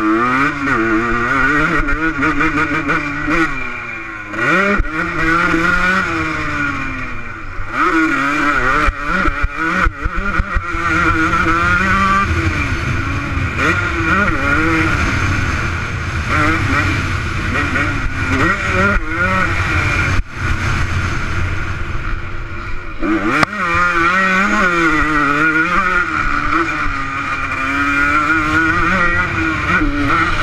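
Motocross bike engine heard from the rider's helmet, revving up and down through the gears over a lap, its pitch climbing and falling continuously. The throttle is chopped briefly several times, at around 4, 7, 10, 20 and 23 seconds in.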